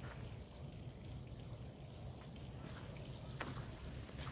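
Quiet outdoor background: a faint, steady hiss with a low hum underneath and a single small click about three and a half seconds in.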